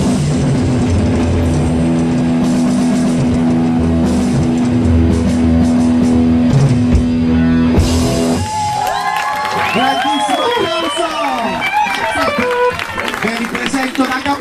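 Live rock band with electric guitars, bass and drum kit playing, a held chord ringing over the drums. The music stops abruptly about eight seconds in, and the audience cheers, whistles and shouts.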